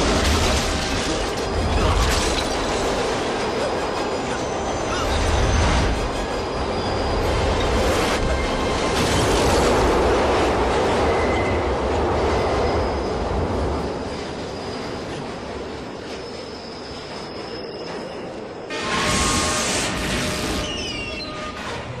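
Subway train running fast through a station, a loud continuous rumble of wheels on the rails with high wheel squeals through it. Near the end comes a sudden loud burst of metal grinding as the wheels throw sparks on the rail.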